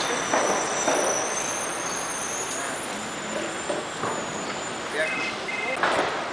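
City street traffic noise from a busy avenue, with a thin high whine over the first half and two short electronic beeps about five seconds in, followed by a sharp knock.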